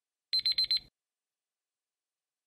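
Countdown timer's alarm sound effect: four quick high-pitched beeps in well under a second, marking that the answer time has run out.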